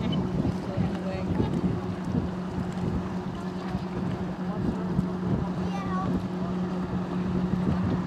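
Motorboat engine idling with a steady low hum, wind buffeting the microphone over it.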